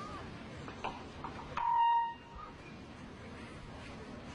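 A single electronic beep, a steady tone lasting about half a second, heard about a second and a half in over low crowd murmur.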